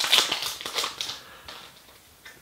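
Paper wrapper of a trading-card pack crinkling and crackling as it is torn open by hand. Loudest in the first second, then fading.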